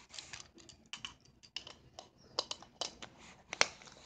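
Light, irregular clicks and taps of small plastic toy figures being handled and set down on carpet, the loudest click near the end.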